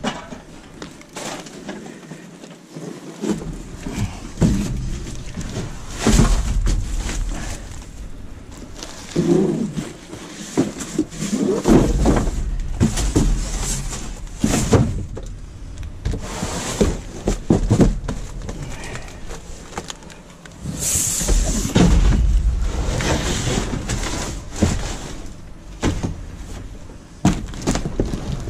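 Cardboard boxes being shifted and dragged about inside a steel dumpster: irregular knocks, scrapes and rustling against the bin's metal walls, with several stretches of low rumble.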